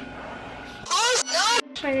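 Near quiet for the first second, then a child's voice gives two short, high-pitched, sing-song calls, each rising then falling in pitch, and speech begins near the end.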